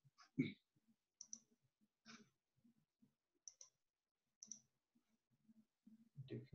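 Near silence over a video-call microphone, broken by about eight faint, irregular clicks of someone working a computer; the loudest comes about half a second in.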